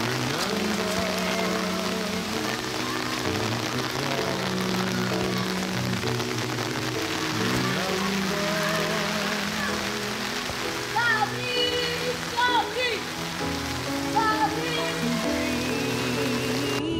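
Heavy rain pouring onto wet paving as a steady hiss, under background music of held low notes. In the second half, short chirps that rise and fall come in several times.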